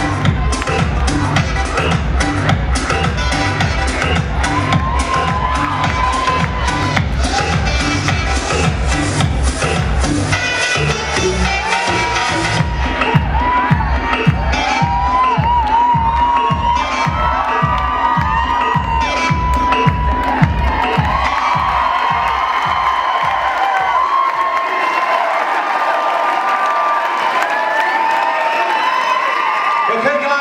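Dance music with a steady beat plays under an audience cheering and shouting; the music stops about 24 seconds in, leaving the crowd cheering.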